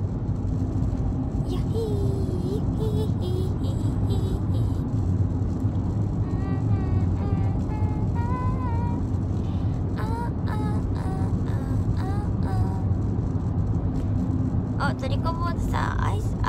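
Steady low rumble of a car's engine and road noise inside the cabin. A faint singing voice comes and goes, clearest around the middle.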